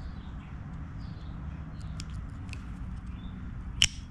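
Faint small clicks of needle-nose pliers working inside a rubber spark plug boot, hooking the coil connector, then one sharp click just before the end as the coil comes free.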